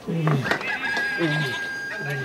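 Rooster crowing: one long held call that starts just under a second in.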